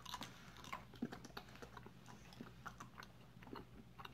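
Faint, irregular small clicks and mouth smacks of people chewing jelly beans.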